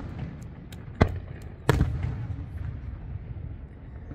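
Aerial fireworks shells bursting: two sharp booms, about one second and just under two seconds in, the second the louder, over a low rumble.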